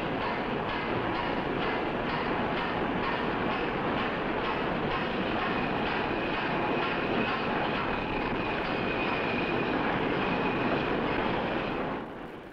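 Machine-shop machinery running steadily: a dense, even mechanical din with a faint high whine in the second half.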